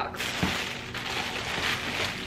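Clear plastic bag crinkling and rustling as it is handled around a glass lamp, with a soft knock about half a second in.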